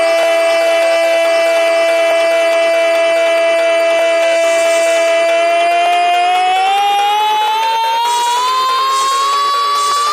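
An electronic siren-like tone in a DJ mix, held level for about six seconds over a pulsing undertone, then rising steadily in pitch as a build-up into electronic dance music.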